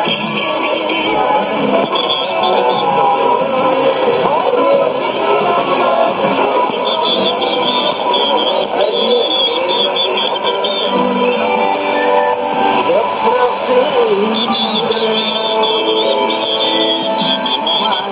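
Music with singing from a shortwave AM broadcast on 7180 kHz, played through a Sony ICF-2001D receiver's speaker, with the narrow, treble-less sound of AM radio reception.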